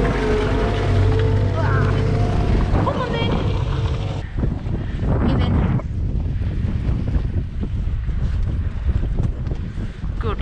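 A telehandler's engine runs close by as a steady low drone, with wind buffeting the microphone. About four seconds in it gives way to wind noise alone.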